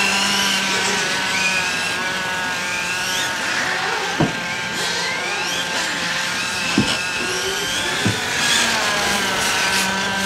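Electric 1/8-scale on-road RC car, the OFNA DM-One Spec-E with a Castle brushless motor system, whining as it accelerates, the whine rising in pitch again and again over a steady hum. Three short sharp clicks come about four, seven and eight seconds in.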